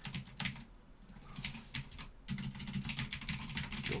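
Typing on a computer keyboard: a run of quick key clicks, sparser at first, with a short pause a little after halfway, then a dense fast burst of keystrokes.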